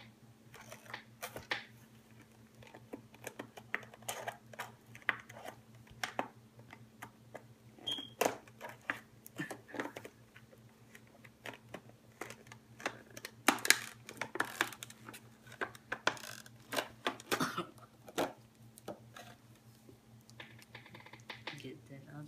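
Children's scissors snipping and a clear plastic toy box clicking and crackling as it is handled and cut open: irregular light clicks and taps, heaviest about halfway through, over a faint steady low hum.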